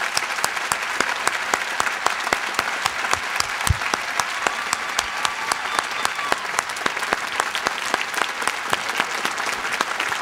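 Large crowd applauding: a dense, steady wash of hand clapping with many sharp individual claps close by. One low thump sounds a little before the middle.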